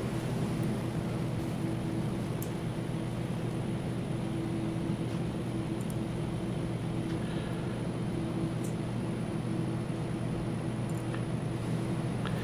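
Steady low room hum from equipment or ventilation, even throughout, with a few faint ticks.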